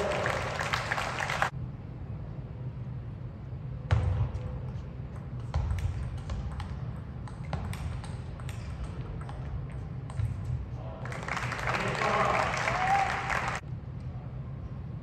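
Table tennis rally: the celluloid-plastic ball clicks sharply off the bats and table about twice a second through the middle of the stretch. It is framed by bursts of crowd noise with shouting voices, one at the start and one after the point ends near the end.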